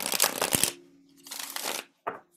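A deck of cards being shuffled by hand: a rapid flurry of card-on-card flicks for most of the first second, then a second, shorter flurry after a brief pause.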